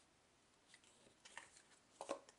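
Near silence, with a couple of faint soft ticks from card stock being handled as adhesive-backed paper layers are pressed onto a folded card base.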